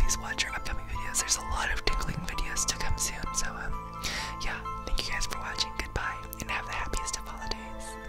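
Close whispering into the microphone, breathy and hissy, over background music with steady held notes.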